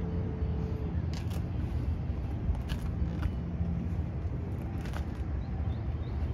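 Low, steady rumble of an idling fire engine, with a few faint clicks scattered through it.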